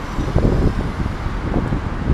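Street traffic with cars driving past, and wind buffeting the microphone in irregular low rumbles.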